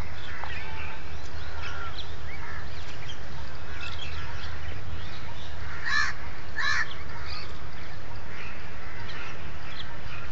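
Birds calling all around: a busy mix of short chirps, with two louder, harsh calls in quick succession about six seconds in, over a steady low rumble.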